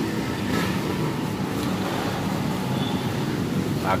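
Steady low rumble of road traffic, with an engine hum running under it.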